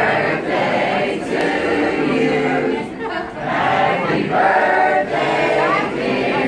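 A group of people singing together, many voices in unison, in two phrases with a short break about halfway.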